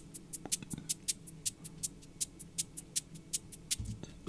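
Electronic percussion loop from a Dark Zebra synth preset: a fast, even run of sharp, ticking hits, about five a second, over a faint low drone, stopping just before the end.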